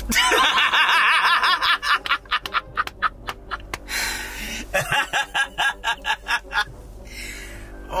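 People laughing hard in repeated bursts of short "ha" pulses, over background music.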